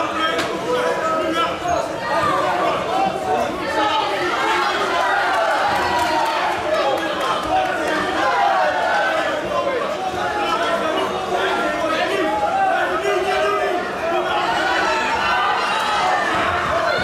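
Spectators in a large hall chattering and shouting, many voices overlapping without a break, with a couple of sharp knocks, one just after the start and one about six seconds in.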